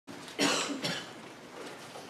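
Two short coughs close together, a little under half a second apart.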